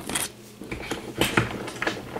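A few light metallic clicks and taps on the washer-dryer's top panel, a couple at the start and several in the second second, as the lid screw and cordless screwdriver are handled.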